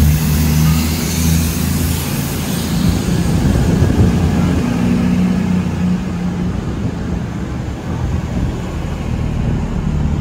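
Class 220 Voyager diesel-electric multiple unit moving slowly along a station platform, its underfloor Cummins diesel engines running with a steady low drone that eases a little as the cars go by.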